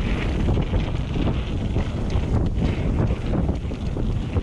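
Wind buffeting the microphone while a mountain bike rolls fast down a dirt trail, its tyres running over the dirt and the bike rattling with frequent small clicks and knocks.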